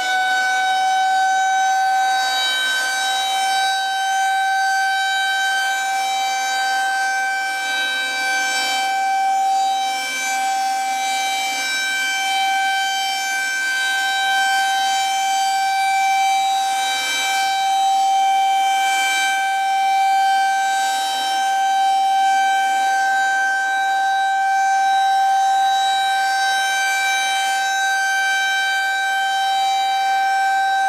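Federal Signal 2001-SRN rotating electromechanical outdoor warning siren sounding the steady "alert" tone used for a tornado watch test. The pitch rises slightly over the first couple of seconds as the siren reaches full speed, then holds as one loud, steady wail while the horn turns.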